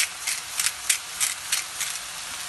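Salt being shaken from a shaker over a pan of frying mushrooms: a quick, even run of short, crisp shakes, about three a second, over a faint sizzle.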